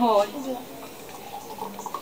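Thick smoothie being poured from a blender jug into a glass, a faint liquid pouring sound after a few spoken words.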